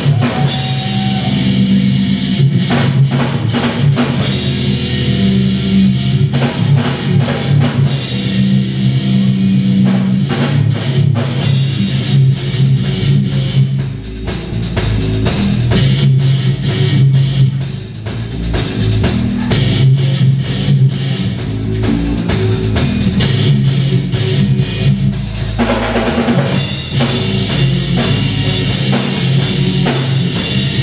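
A heavy metal band playing live through a club PA: electric guitars, bass and a drum kit. The riff changes about twelve seconds in and again near the end.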